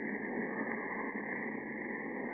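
Steady hiss of an old, narrow-band radio broadcast recording, with no voices or music in a pause of the drama.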